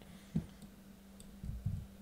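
A few faint clicks and low bumps from a computer keyboard and mouse as a query is selected and pasted, over a steady low hum.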